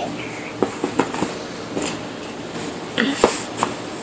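Light clicks and taps of chunky puzzle pieces being handled and set against an inset puzzle board, several of them spaced irregularly, with a cluster about three seconds in.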